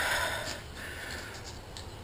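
Faint rustling and handling noise, with a soft breath-like hiss in the first half second, as the removed, rust-seized rear shock is picked up off the floor.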